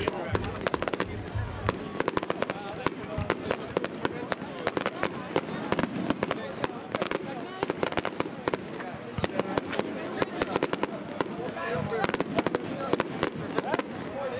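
Display fireworks going off: a dense, unbroken run of sharp bangs and pops, many each second, as aerial shells burst and ground fountains fire.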